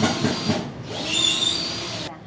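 Power drill running overhead at the ceiling joists, ending in about a second of steady high whine that stops abruptly.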